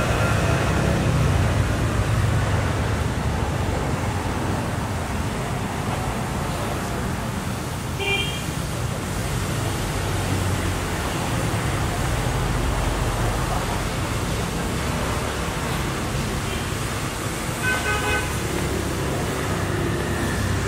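Steady street traffic running past, with a brief horn toot about eight seconds in and a few short horn toots near the end.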